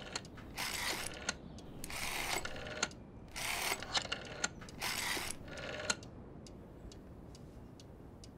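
Rotary dial of an old wooden wall-mounted telephone being dialled digit by digit: four ratcheting spins about a second and a half apart. A few faint clicks follow near the end.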